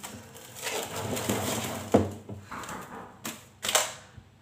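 Plastic cling film being pulled, stretched and crinkled over a dish of bread dough, with a sharp snap about two seconds in and two short crackles near the end as it is pressed down.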